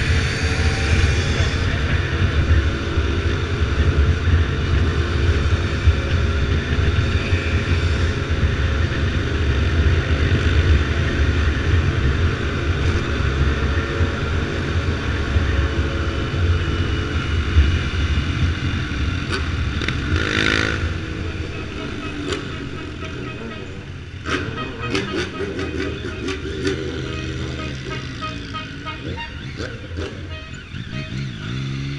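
BMW F800R's parallel-twin engine running under way, mixed with wind rush on the helmet microphone. About two-thirds of the way in an engine revs up and down briefly, and over the last several seconds the sound drops as the bike slows in traffic, with engines revving on and off.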